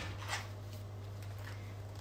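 A picture book's page being turned: a faint, brief paper rustle about a third of a second in, over a steady low hum.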